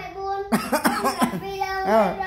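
A young child's voice chanting numbers in a sing-song, reciting the multiplication table aloud, with a sharp catch about half a second in.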